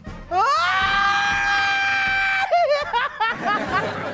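A high-pitched voice glides up into one long held note for about two seconds, the drawn-out "so" of "so refreshing". It then breaks into a rapid wavering, laugh-like warble.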